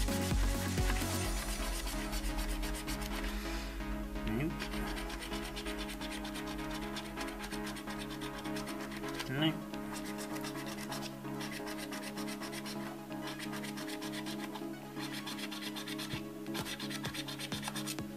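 A coin scraping the silver scratch-off coating off a paper scratchcard in repeated rasping strokes, over background music.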